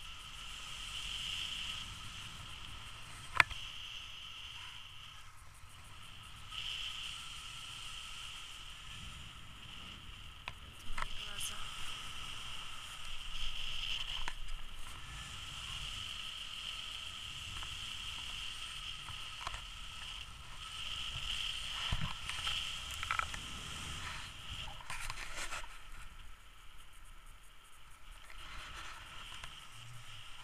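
Airflow buffeting a camera microphone in flight under a tandem paraglider: a steady low rumble with a constant high whistle-like tone above it. A sharp click about three seconds in and a few lighter knocks later, from handling of the camera mount.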